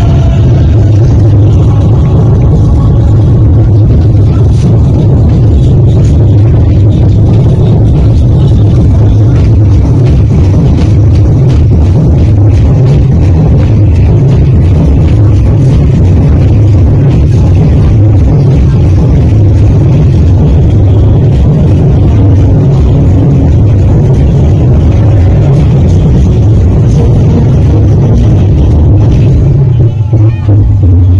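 Very loud, bass-heavy music from a DJ sound system, running steadily and almost at full scale on the recording, so that the heavy low bass swamps everything else.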